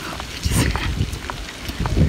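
Outdoor ambience: an irregular low rumble of wind buffeting the microphone starts about half a second in, with a few faint scattered clicks.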